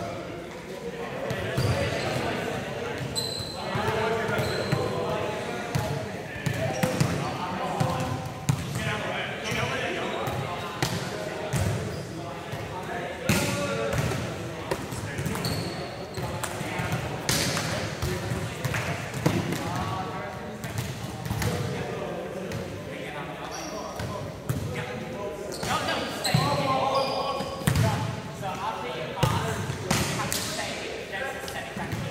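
Volleyballs being struck and passed, with irregular sharp slaps of hands on the ball and the ball bouncing on the sports-hall floor, echoing in the large hall. Players' voices call and chatter throughout.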